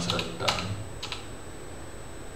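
Computer keyboard keys being typed: a few keystrokes in the first second or so, then the keys fall still.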